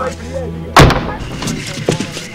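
A single loud boom about a second in, dying away over a moment, followed by a few lighter knocks.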